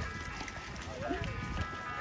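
Faint voices of people talking at a distance, over steady background music.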